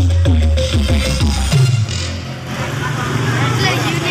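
Electronic dance music with very heavy deep bass, played through a large street sound-system rig of stacked speaker cabinets and horn tweeters. The deep bass cuts out about two seconds in, and voices are heard over the thinner music after that.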